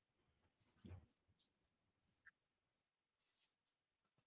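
Near silence: a pause in an online call, with one faint brief sound about a second in.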